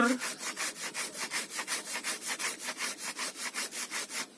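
Hand saw cutting through a live waru (sea hibiscus) branch in quick, even back-and-forth strokes, about six a second.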